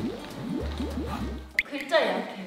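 Comedic editing sound effect: a quick run of short rising droplet-like blips over background music with a steady low bass, followed by a sharp upward whistle-like sweep near the end.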